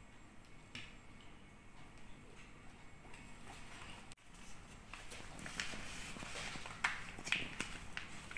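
Craft-table handling noises: light taps and paper rustling, then, after a break about four seconds in, busier clicks and taps of a clear plastic stamp block being set and pressed on a paper card.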